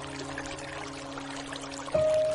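Slow, soft piano music, a held chord fading away, over a steady hiss of rain; a new note is struck near the end.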